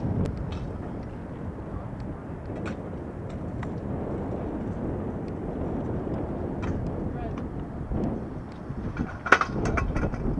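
Outdoor ambience by open water: a low, uneven wind rumble on the microphone, with faint voices and a sharp click about nine seconds in.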